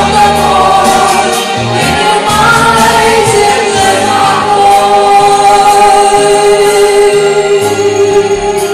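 A choir singing a slow song in chorus over instrumental accompaniment, settling on a long held note for the second half.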